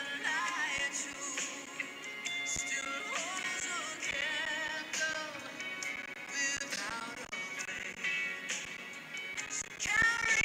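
A song: a solo singing voice with vibrato over instrumental accompaniment.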